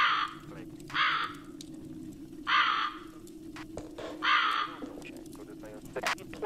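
Crow cawing: four harsh caws, each about half a second long and one to two seconds apart, over a steady low hum.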